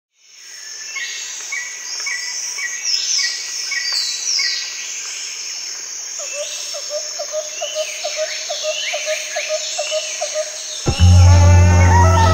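Recorded nature ambience: many birds chirping and calling over a bed of insects, with one call repeating about twice a second and later a lower call repeating about three times a second. A loud, deep bass note of music comes in near the end.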